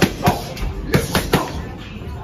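Boxing gloves smacking against focus mitts in quick, uneven combinations, about five sharp hits in the first second and a half, over background music.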